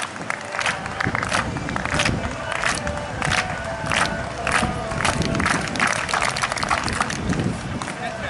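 Spectators clapping in unison, the rhythmic handclap given to a triple jumper for his run-up: sharp claps about every two-thirds of a second, over general crowd noise.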